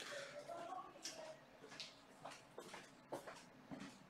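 Quiet small-room tone with a faint murmur of a voice in the first second, then about six soft, sharp clicks spaced irregularly through the rest.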